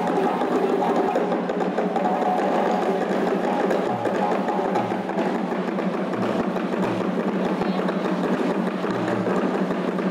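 Live djembe ensemble playing a fast, dense rhythm, with a few deeper drum strokes now and then.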